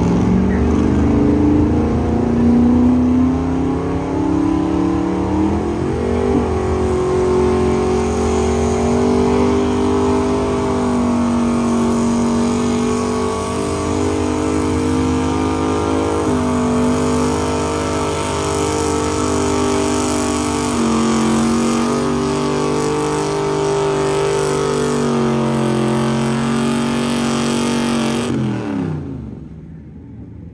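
Square-body Chevrolet pickup's engine working at high revs under load while dragging a weight-transfer pulling sled. The pitch climbs over the first few seconds and steps up about six seconds in, then holds near steady. Near the end the revs fall away and the engine goes quiet.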